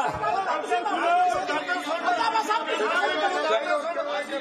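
Several men's voices talking over one another at once, an unresolved babble of argument in a large hall.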